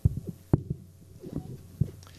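Handling noise on a conference-table microphone as it is moved into position for the next speaker: a run of low thumps and knocks, with one sharp click about half a second in.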